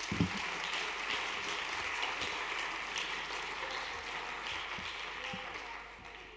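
Audience applause, a steady clatter of many hands clapping that starts to fade near the end. A low thump sounds just at the start.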